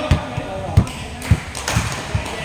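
Basketball bouncing on a hardwood gym floor: a handful of short, deep thuds at uneven intervals, with indistinct voices in the hall.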